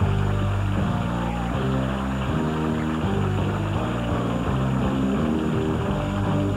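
Loud instrumental band music that starts abruptly: held chords changing step by step over a strong bass line, with audience applause underneath.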